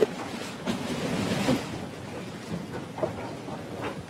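Low courtroom room noise with faint, muffled murmuring and rustling, and a couple of light knocks near the end.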